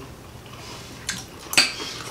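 A metal fork clinking against a dinner plate while eating: a faint tick about a second in, then one sharp clink with a short ring about a second and a half in.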